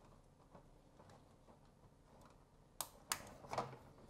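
Mostly quiet room tone, then a few sharp light clicks about three seconds in as wire and parts are pressed into the spring clips of an electronics kit's plastic board.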